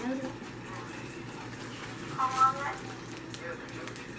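A child's voice: a short, pitched vocal sound about halfway through, after the last word of a phrase at the very start, with quiet room tone between.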